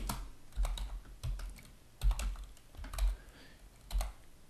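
Computer keyboard being typed on: a handful of separate keystrokes spread through the seconds, with short pauses between them and dull low thumps under several of the presses.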